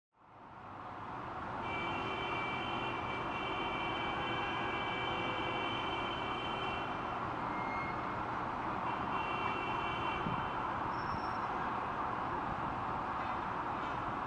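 Steady distant city ambience, a wash of traffic noise that fades in over the first two seconds, with a faint steady high whine for about five seconds and again briefly near the ten-second mark.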